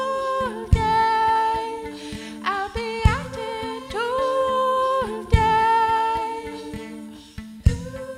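A woman singing long held notes in a live looping folk-electronic song, over a low synth drone that shifts pitch now and then. A sharp beat lands about every two and a half seconds.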